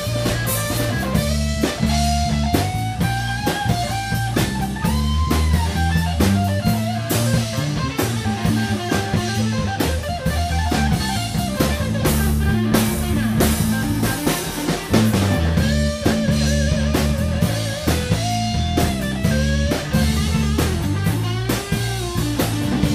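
Live rock band playing: an electric guitar takes a lead line with bent notes and wavering held notes over bass guitar and a drum kit.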